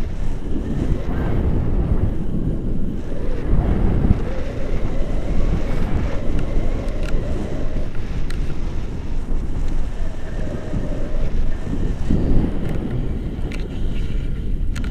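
Wind buffeting an action camera's microphone in flight under a tandem paraglider: a loud, steady, low rumble of rushing air.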